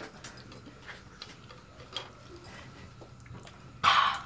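A few faint, scattered light clicks and taps from handling a tall drinks glass as it is garnished with a mint sprig and a straw. Just before the end, a loud short vocal exclamation.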